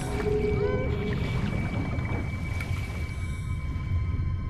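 Film underwater soundtrack: a steady low rumble of water ambience under a score of faint held tones, with a held note and short gliding tones in the first second.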